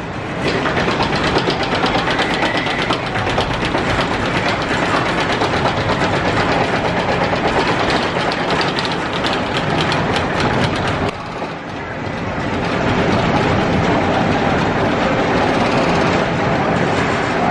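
Roller coaster train climbing the lift hill: the lift chain running with a fast, even clicking of the anti-rollback dogs. The clicking stops about eleven seconds in, and a steadier running noise follows.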